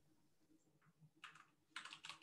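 Faint typing on a computer keyboard: a few quick keystrokes about a second in, then a louder cluster of keystrokes near the end, a short search word being typed into a browser's find box.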